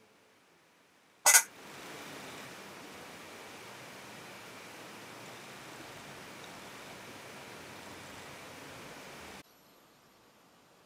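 A sharp, loud click about a second in, then a steady even hiss that cuts off abruptly near the end.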